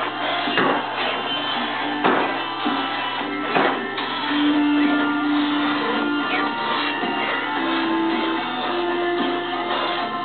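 Background music played on guitar: sustained notes and chords with a few sharp strummed attacks in the first few seconds.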